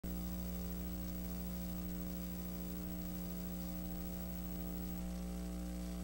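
Steady electrical mains hum, a low buzz with its overtones, over a faint hiss, unchanging throughout.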